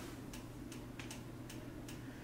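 Faint, even ticking, a few ticks a second, over a low steady room hum.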